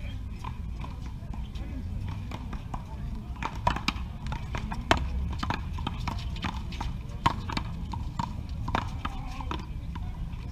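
A one-wall paddleball rally: the rubber ball smacking off the paddles and the concrete wall in a run of sharp knocks, the loudest few in the middle of the rally.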